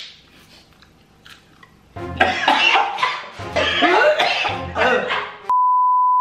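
A quiet moment, then loud music with vocals over a regular low beat, cut off near the end by a steady, high test-tone beep of the kind played with a colour-bars screen.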